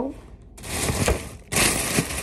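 Loud rustling as a pleated fabric skirt is handled and unfolded close to the microphone, in two stretches: one swelling up about half a second in, a second starting suddenly about one and a half seconds in.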